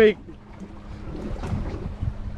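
Wind buffeting the microphone and water sloshing against the hull of a small boat at sea, with a faint steady hum underneath.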